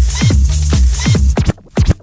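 Techno DJ mix: a driving kick-drum beat over a steady bassline and hi-hats. About a second and a half in, the bass and hats drop out, leaving only a quick run of bare kick hits.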